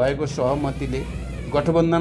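A man talking in Nepali, with a brief pause about halfway through.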